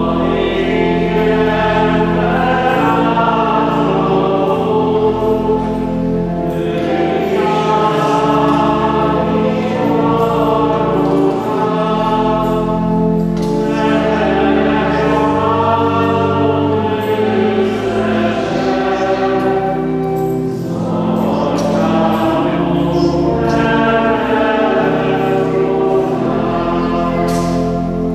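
Church choir singing a hymn in long phrases, with short breaks between them, over sustained low accompanying notes that change in steps.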